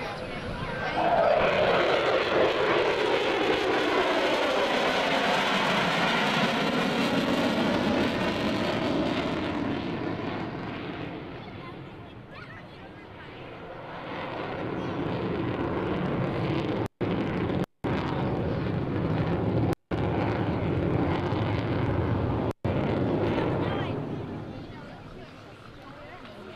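Twin-engine F-14 Tomcat jet fighter passing with afterburners lit: a loud roar that swells in with a falling pitch as it goes by, eases off, then swells again before fading near the end. The sound cuts out briefly four times in the second swell.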